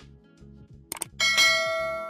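Subscribe-button animation sound effect: a quick double mouse click about a second in, followed at once by a bright bell ding that rings on and fades slowly. Quiet background music with a steady beat runs underneath.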